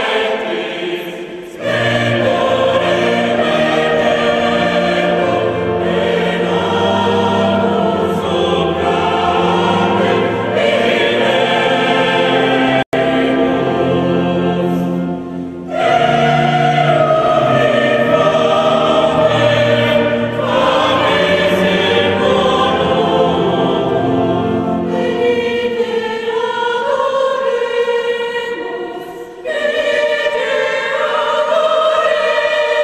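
Background music: a choir singing slow, sustained phrases, with short breaks between phrases about a second and a half in and about halfway through.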